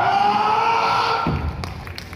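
A voice holding one long vowel that rises slightly in pitch for just over a second. Then a low thump, like a heavy step on the wooden stage floor.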